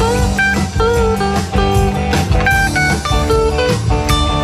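Live band playing amplified music on electric guitars, bass and drum kit, with a lead line of bending, sliding notes over the top.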